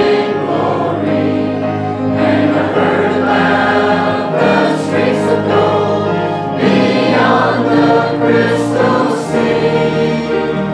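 Church choir of mixed voices singing a gospel hymn, accompanied by an organ with long held bass notes that change every couple of seconds.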